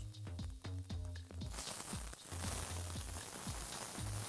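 Background music with a steady bass beat. From about a second and a half in, corn kernels sizzle as they fry in oil in a pan.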